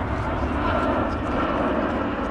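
Airplane flying low overhead: a steady engine rumble and rush with a faint high whine.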